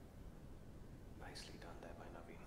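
A faint low background hum, then from a little over a second in a brief, quiet, whispered or murmured voice.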